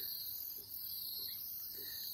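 Faint, steady, high-pitched chirring of insects such as crickets, with no other distinct sound.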